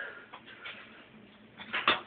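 Quiet handling noise from a foam model jet fuselage and its poster-board thrust tube being handled: a few faint light taps and rustles, then a short louder rustle near the end.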